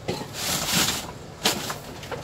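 Rummaging through a cardboard box of hobby paints: a rustle lasting about a second, then a sharp click about a second and a half in.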